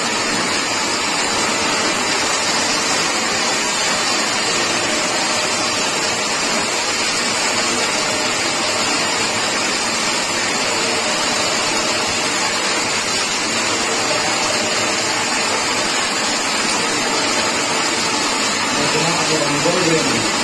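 Toroidal coil winding machine running steadily, its shuttle ring carrying copper wire around through the taped core: an even whirring hiss with a faint steady hum underneath.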